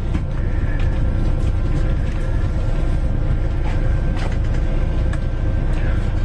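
Coach bus idling, heard from inside the passenger cabin: a steady low rumble with a faint steady hum over it.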